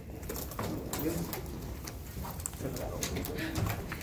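Low murmur of voices with small clicks and rustles through a classroom lull.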